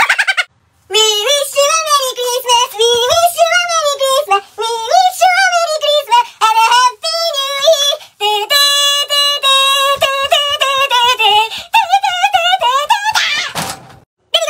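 High-pitched, synthetic-sounding singing voice in quick, wavering notes, with a few held steady notes midway. It opens with a brief loud noisy burst and ends with another.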